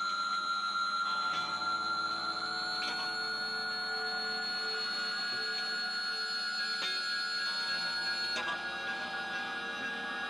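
Slow instrumental drone music on layered guitars: several bright, sustained ringing tones held for seconds at a time, with the notes shifting a few times.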